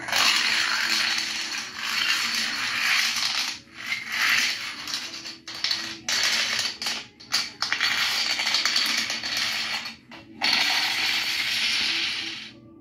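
Long runs of toy dominoes toppling in a chain reaction: a dense, continuous clatter of many small pieces knocking over, with a few brief breaks. It comes from a tablet's speaker.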